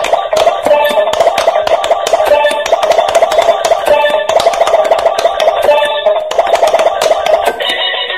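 Electronic pop-it push game toy playing its tinny game music through its small speaker, with rapid clicks of its silicone bubble buttons being pressed as they light up. Near the end the music gives way to a different beeping jingle.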